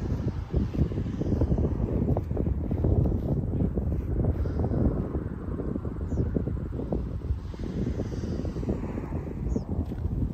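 Wind buffeting the microphone: a loud, uneven low rumble that gusts and flutters.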